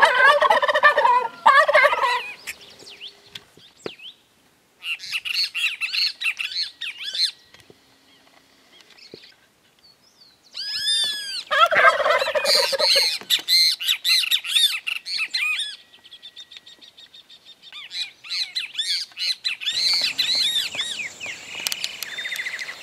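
Domestic turkey toms gobbling in four bursts a few seconds apart. The third burst is the longest.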